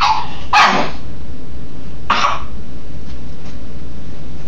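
A pug barking three times in short, sharp barks; the second is the loudest.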